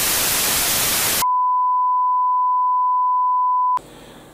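Television static hiss, then a steady single-pitch test-card tone that starts sharply about a second in and cuts off abruptly near the end.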